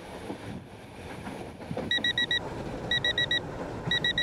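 Steady running rumble of a moving train inside the sleeper compartment; about two seconds in, a smartphone starts beeping in quick groups of four short electronic beeps, one group every second. The alert announces a heat warning from the German weather service.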